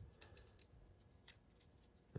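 Near silence, with a few faint ticks and rustles as thread seal tape is pulled off its spool and wrapped onto a fitting's threads.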